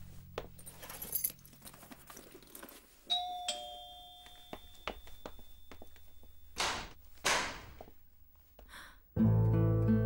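A two-note electronic doorbell chime, a high note then a lower one, about three seconds in. Two short noises follow at about six and a half and seven seconds as the front door is opened. Low background music fades out early on the way in, and a new music cue comes in near the end.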